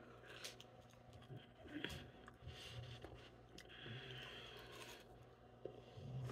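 Faint chewing of French fries, a few soft crunching and mouth sounds.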